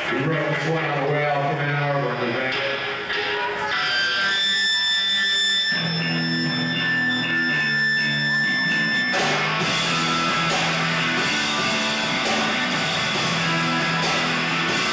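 A live rock band's electric guitar opening a song: a run of picked notes, then a couple of seconds of held, ringing high tones, then a repeating riff from about six seconds in. The rest of the band joins around nine seconds in, making it fuller and noisier.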